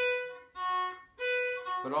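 Fiddle bowing a stop-and-change cross-string exercise: three separate notes, first finger on the A string, second finger on the D string a little lower, then back to the A-string note. The bow stops between notes, so each note dies away before the next begins, with no leftover sound carrying over.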